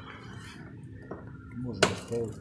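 Side cutters snipping off the excess tails of plastic zip ties: a faint snip about a second in and a sharp snap near the end.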